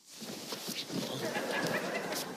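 Studio audience laughter that swells in just after a door slam and keeps going.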